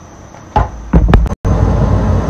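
A metal scoop knocks against the side of a hammered aluminium pan of boiling coconut milk, once about half a second in and then three quick times around a second in. After a brief cut, a steady low rumble takes over.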